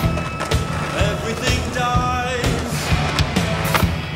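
Music playing over a skateboard's wheels rolling on concrete, with several sharp knocks of the board striking the ground.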